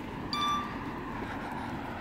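Steady street traffic noise, with one short, bright metallic ding about a third of a second in.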